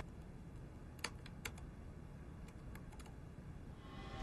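Keys tapped on a small white laptop keyboard: two sharp key clicks about a second in, then several lighter, irregular taps.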